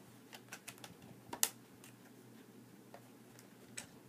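Scattered small clicks and taps from handling a Blu-ray steelbook case and its disc, loudest about one and a half seconds in, with another near the end.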